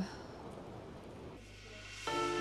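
Faint, steady background hiss with no distinct event, dropping to a quieter low hum about one and a half seconds in.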